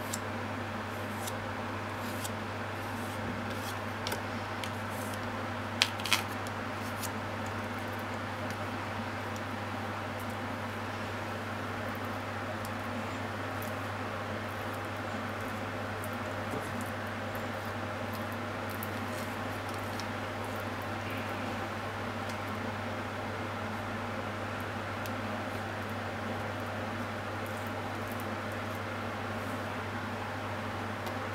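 Steady machine hum with a few light clicks of a wooden spatula working paste onto salmon in a plastic dish, the loudest two sharp clicks close together about six seconds in.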